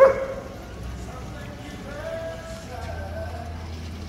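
A dog barks once, sharply, right at the start, the loudest sound here; voices talk in the background afterwards.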